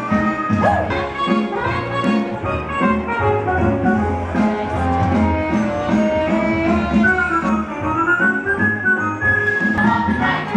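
Upbeat band music with a steady beat, played for a costumed street-dance show.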